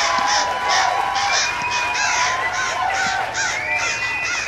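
A flock of geese honking overhead, many calls overlapping without a break.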